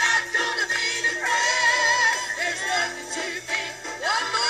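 Pentecostal gospel choir singing, with held, wavering notes, over the choir's hand clapping.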